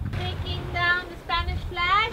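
A young child's voice singing a few short held notes, sliding upward near the end, over a low rumble.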